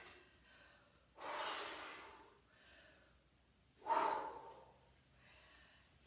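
A woman's heavy exhales from exertion during a dumbbell workout: a long, breathy blow about a second in, then a shorter, voiced exhale about four seconds in.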